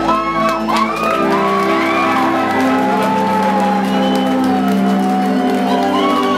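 A live band holds a sustained chord after the drums stop, about a second in. Over it the crowd whoops and shouts.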